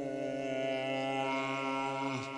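Experimental Minangkabau ratok music: low chanted notes held steadily in a drone-like layer, with higher held tones above them.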